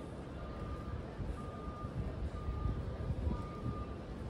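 An electronic beep repeating about once a second, each beep about half a second long and at one steady pitch, over a low rumble of city street noise.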